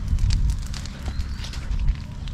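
Wind rumbling on the microphone, with scattered faint crackles and rustles over it.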